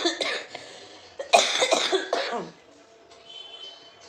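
A woman coughing: a short cough at the start, then a longer, louder fit of coughs about a second in that dies away. The cough comes on whenever she talks.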